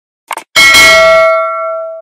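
Notification-bell sound effect for a subscribe-button animation: a short click, then a bright bell ding about half a second in that rings on and slowly fades.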